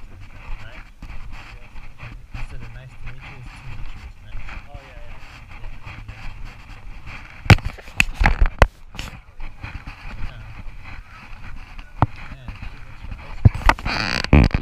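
Indistinct voices of people talking nearby, with a few sharp knocks or clicks about halfway through and again near the end.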